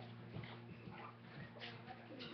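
Faint footsteps crossing a room toward the microphone, a few soft thuds, over a steady low electrical hum.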